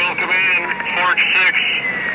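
Fireground radio traffic: a man's voice coming through a two-way radio speaker, narrow and tinny, with a thin whistle tone slowly sliding down in pitch under it.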